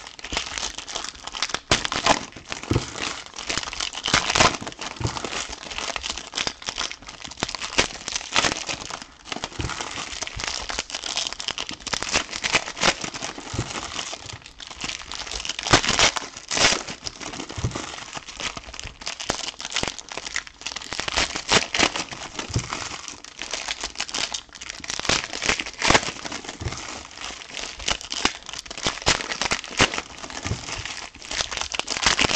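Silver foil trading-card packs being torn open and handled, a continuous crinkling and crackling of foil wrappers with sharp tearing sounds and a few louder stretches of crinkling.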